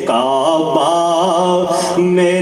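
A man singing a naat, an Urdu devotional song in praise of the Prophet, in a long melismatic phrase with wavering, gliding pitch.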